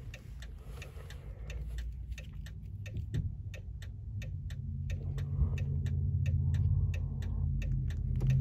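Even, rapid clicking inside a car's cabin, about three clicks a second, with a low hum growing louder beneath it from about midway. This is the little clicking that signals the smart key card has been programmed successfully.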